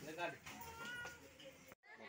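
Faint voices, with a brief high-pitched call about a second in; the sound cuts off abruptly near the end.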